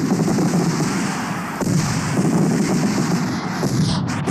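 Fireworks going off in a fast, continuous barrage of pops and crackles, with a few sharper reports among them.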